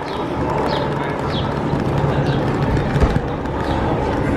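Small plastic wheels of a child's rolling suitcase running steadily over rough concrete pavement.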